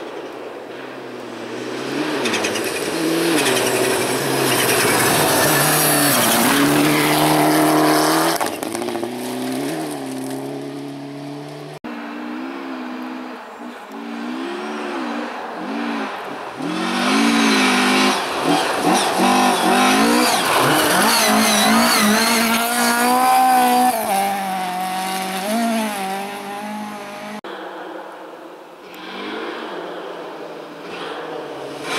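Rally cars passing on a gravel stage, engines revving hard with the pitch rising and dropping through gear changes over a hiss of tyres on loose gravel. The sound cuts off abruptly about twelve seconds in and again near the end as the footage jumps to the next car, the second a Volvo saloon.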